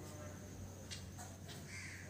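Faint background with a low steady hum and a single short bird call near the end, like a distant caw.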